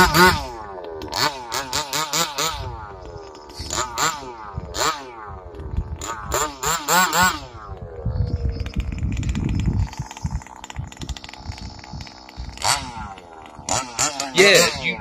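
Large-scale RC dragster's small two-stroke gas engine being blipped, its pitch rising and falling over and over, then running lower and steadier with one more quick rev near the end.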